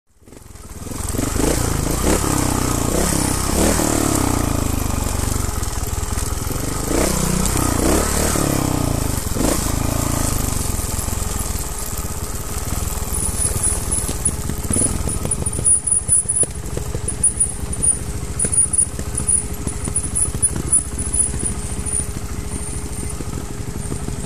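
Wind rushing over the microphone with bumps and rattles from a mountain bike running down a rough dirt trail, strongest in the first half; later the rumble eases and short knocks come every second or so.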